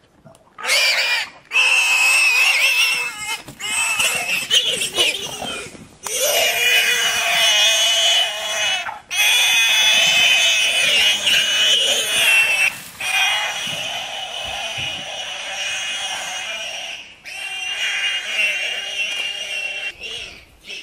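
A warthog's distress squeals as a lion drags it from its burrow: long, high, harsh screams broken by brief pauses every few seconds.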